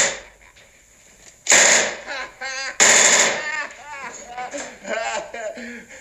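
Two short bursts of machine-gun fire, about a second and a half apart, each about half a second long, with a man laughing between and after them.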